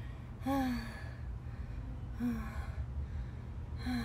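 A woman's short voiced sighs, three of them, each falling in pitch, as she catches her breath from a resistance-band workout. A steady low hum runs underneath.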